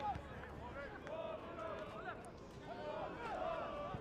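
Faint, scattered shouts and calls from footballers and a few spectators around an outdoor pitch, over a low open-air background.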